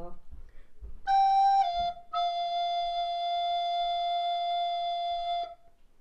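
Descant recorder played about a second in: a short G slurred down to F without a break, then a fresh tongued F held steady for about three seconds.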